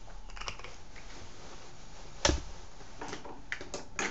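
Clicks and light knocks of makeup items being handled, such as eyeshadow pans and brushes picked up and set down. One sharp click comes a little past halfway, then a quick run of lighter clicks near the end.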